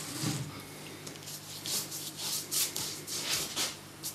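A wide hake brush loaded with clean water swishing across paper in a series of irregular strokes, wetting the sheet for wet-into-wet painting.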